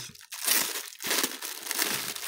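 Clear cellophane bag of wrapped chocolates crinkling as hands work it open, in a dense run of crackles that is loudest about half a second in and dips briefly near the one-second mark.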